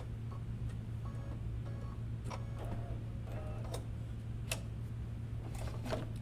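Embroidery machine running as it stitches a hooped design: a steady low hum with light ticks at uneven intervals.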